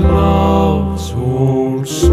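A slow traditional ballad: male voices singing long, drawn-out notes over a sustained accompaniment, with a brief hiss of sung consonants about a second in and again near the end.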